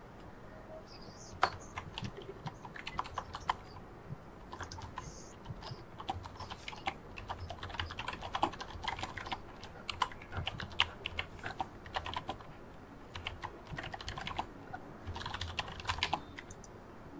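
Faint typing on a computer keyboard: an irregular run of key clicks starting about a second and a half in, with brief pauses between bursts.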